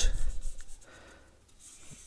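Marker pen drawing a line on paper: a short rubbing stroke in the first half-second, then faint.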